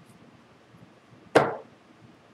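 A single sharp knock about one and a half seconds in, like a hard object set down or struck on a tabletop, dying away quickly.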